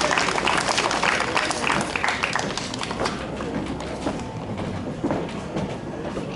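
Audience applauding, the clapping thinning out about halfway through into a softer crowd murmur.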